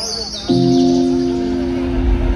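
Electronic dance music from a festival sound system: high chirping, bird-like sounds, then a loud held chord comes in suddenly about half a second in.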